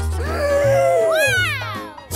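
Excited, drawn-out "ooh" exclamations from several voices, gliding up and down in pitch, over background music with a steady bass line.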